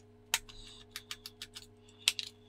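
A run of small, sharp clicks and taps of fingers and a screwdriver on a plastic battery box, working the battery cover open, over a faint steady hum.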